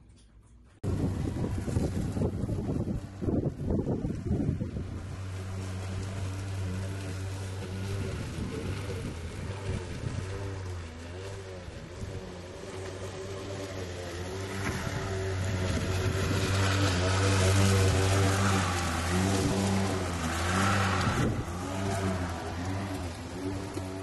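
Walk-behind lawn mower engine running steadily, its pitch wavering as it works. It gets louder until about two-thirds of the way through, then eases off somewhat.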